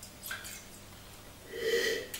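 A man sniffing a glass of red wine: a short inhale through the nose near the end, after a quiet stretch.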